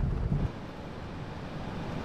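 A deep low rumble that stops about half a second in, then a steady, even background hiss.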